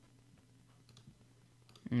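A few faint, sharp computer mouse clicks over a low steady hum, with a man starting to speak just before the end.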